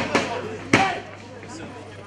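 Two sharp hits of strikes landing in a fight, one just after the start and a louder one about three quarters of a second in.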